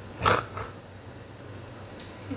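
A short slurping sip drawn from a beer can, with a smaller second one just after, over a low steady hum.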